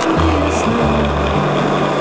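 Skateboard wheels rolling over asphalt, a steady rushing noise that cuts off suddenly at the end, over a pop song with a steady bass line.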